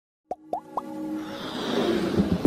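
Three quick pops, each rising in pitch, a quarter second apart, then a swelling whoosh that builds in loudness: the sound effects and music of an animated logo intro.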